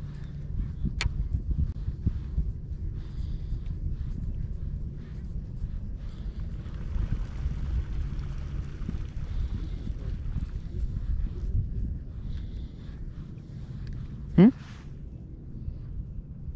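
Steady low hum of a bow-mounted electric trolling motor under an uneven low rumble, with one sharp click about a second in and a short rising voice sound near the end.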